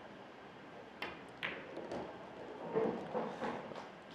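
Pool cue striking the cue ball about a second in, then the sharper click of cue ball on object ball, followed by a few softer knocks as the ball goes into the pocket, over quiet hall ambience.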